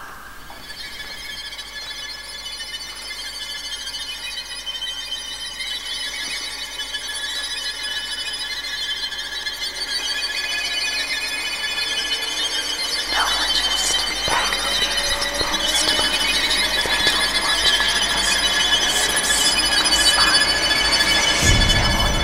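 Horror soundtrack: a dissonant cluster of high, screeching sustained tones swelling steadily louder as tension builds.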